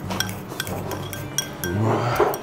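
Chopsticks clinking repeatedly against a rice bowl, several quick light taps as the last of the rice is scraped out of the bowl.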